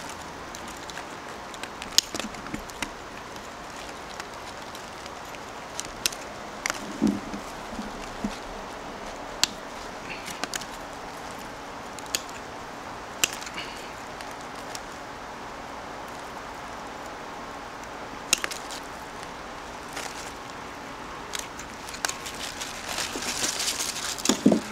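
Steel bonsai scissors snipping small Lebanon cedar twigs: about a dozen sharp clicks, spaced irregularly a second to several seconds apart, over a steady low background hiss. Light rustling of foliage builds near the end.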